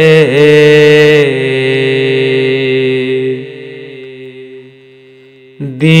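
A male voice holds the last sung note of a naat line over layered vocal backing, with no instruments. The note fades away after about three seconds, and the next line begins strongly near the end.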